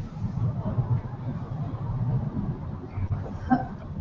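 Low, fluctuating rumbling background noise on an open video-call line while a reply is awaited, with a faint short sound about three and a half seconds in.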